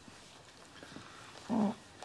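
Quiet room tone with one short wordless vocal sound from a person about a second and a half in.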